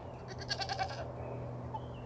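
A nanny goat bleats once, a short quavering call, about a third of a second in. It is the doe calling for her kid, who has been taken out of the pen.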